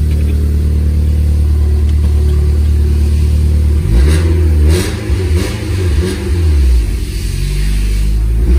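Honda Civic four-cylinder engine with a straight-pipe exhaust, heard from inside the cabin. It idles with a steady low drone, then from about four seconds in the revs rise and fall unevenly as the throttle is blipped.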